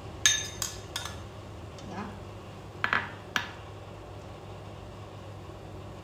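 Sharp clinks of a utensil against a stainless steel pot of boiling water as green tea leaves are added and stirred: three quick clinks in the first second and two more around three seconds in, over a steady low hum.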